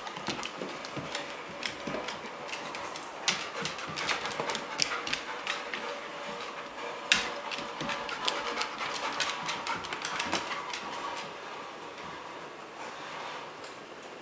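A searching dog's claws clicking on a hardwood floor in quick, irregular taps as it moves about, with its sniffing. The clicking is busiest through the middle and thins out near the end.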